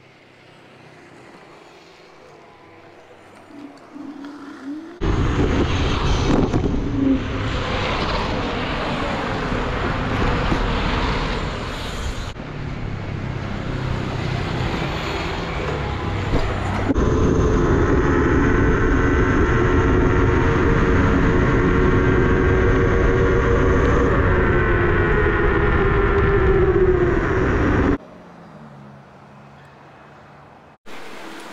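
Faint street ambience, then about five seconds in a sudden loud rush of wind noise and road noise on the microphone of a moving scooter-mounted camera. From about seventeen seconds a steady mechanical whine with several pitches runs on top, and the sound cuts off sharply near the end.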